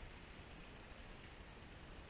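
Faint, steady outdoor noise of wind and choppy water, with a flickering low rumble.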